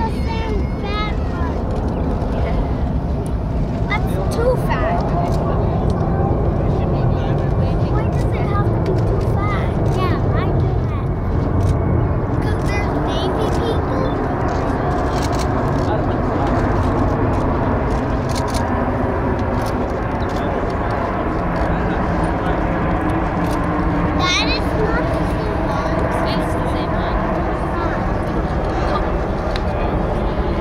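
Boeing C-17 Globemaster III's four turbofan engines running steadily as it passes low overhead, with spectators' voices faintly in the background.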